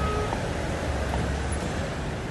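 Steady city road traffic noise, with a low vehicle engine rumble that is strongest in the middle.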